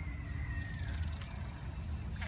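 Outdoor background noise: a steady low rumble, with a faint thin high tone that slowly falls and fades out within the first second.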